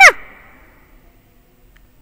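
A woman's voice ending a word right at the start, then near silence with only faint room hiss.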